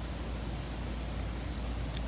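Steady outdoor background noise with a constant low rumble and no distinct sound events.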